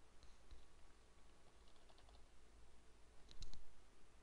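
Faint clicking at a computer: a couple of light clicks early on, a small cluster near the middle, and the loudest few clicks near the end.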